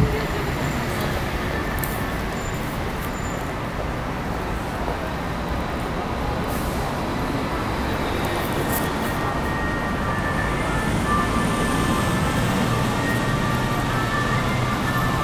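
Steady low rumble of passing city vehicles, with faint steady high tones joining from about eight seconds in.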